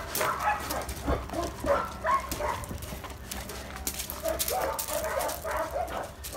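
A dog making short, quiet vocal sounds, with scattered scuffs and clicks on gravel around them.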